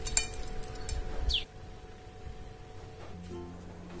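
Light crackling and crunching of crisp, lacy Milo crepe rolls being picked up and handled, in the first second and a half. Soft background music with held and plucked notes runs underneath and carries on alone afterwards.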